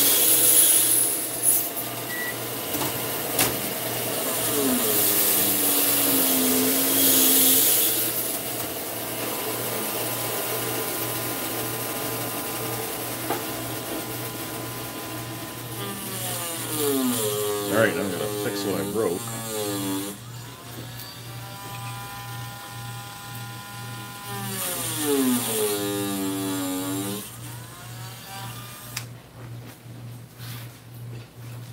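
Small power tool motor running with a whine that glides down and up in pitch, holds steady for a few seconds, then falls again, over a low steady hum.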